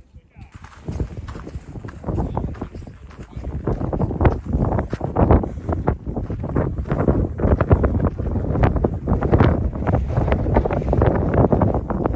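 Wind buffeting the camera microphone: loud, irregular rumbling gusts that start about half a second in and keep swelling and dropping.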